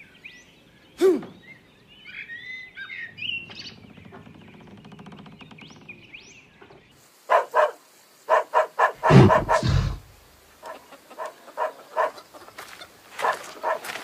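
Cartoon animal-like sound effects: short chirping calls in the first few seconds, then from about seven seconds a run of short, repeated pitched calls. A heavy low thump comes about nine seconds in.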